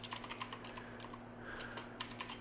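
Typing on a computer keyboard: a quick, irregular run of light key clicks, with a faint steady low hum underneath.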